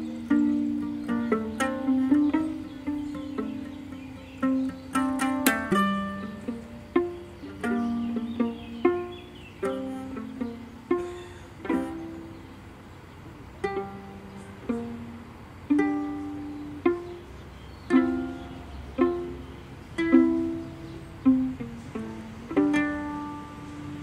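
Acoustic string duet played by plucking: a violin played pizzicato and a long-necked plucked string instrument. The notes are separate, each ringing and fading, with a quick run of high notes about five seconds in.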